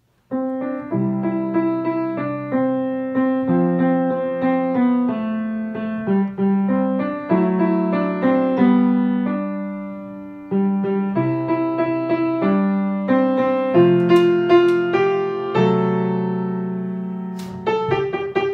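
Upright piano played with both hands, slowly and softly: a melody over sustained left-hand chords. The notes fade into a short pause about halfway through before the next phrase begins.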